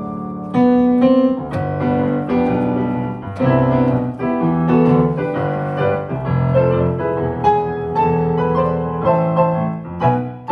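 Solo piano playing a slow piece, chords and melody notes struck about twice a second and left to ring.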